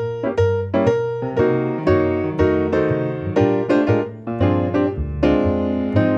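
Yamaha grand piano playing a jazz solo in a steady run of notes and chords, with an upright double bass playing low notes beneath it.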